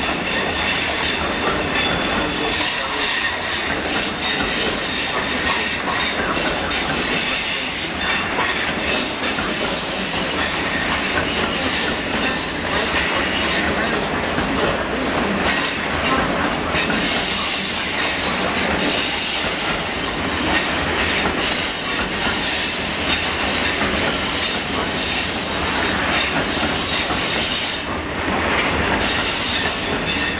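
A long rake of bogie hopper wagons rolls past steadily on curved track. Its wheels squeal with a thin high ringing and clatter over the rail joints in a continuous noise.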